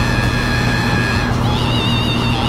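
Outdoor air-conditioning condenser unit running with a steady low hum. High whistling tones sound over it, turning wavering about a second and a half in.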